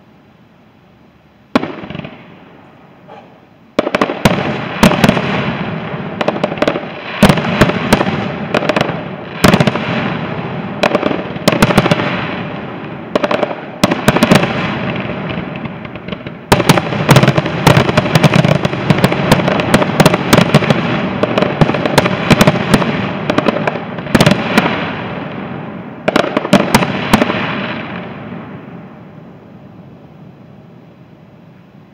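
Fireworks display: a single boom, then a dense, continuous barrage of aerial shell bursts and crackling that goes on for over twenty seconds before dying away near the end, the display's closing barrage.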